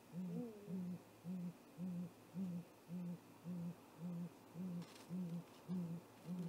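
Great gray owl giving a long, evenly spaced series of deep hoots, about two a second, eleven or so in a row. Fainter, higher rising-and-falling calls sound over the first of them.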